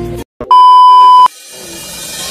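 A single loud, steady electronic beep tone, under a second long, added in editing at a cut between shots; it starts and stops abruptly after a brief moment of silence, and quiet music rises after it.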